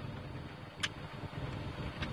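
Low, steady background rumble inside a vehicle cab, with one short sharp click just under a second in.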